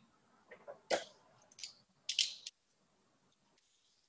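Faint handling noises of friction-hitch cord being worked on a climbing rope: a sharp click about a second in and a few brief rustles, then silence.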